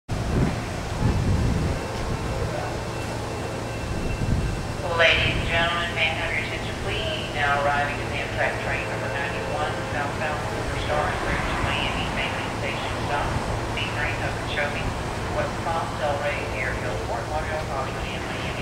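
A voice over a station public-address system, starting about five seconds in and running on, over a steady low hum. Low rumbles come in the first two seconds.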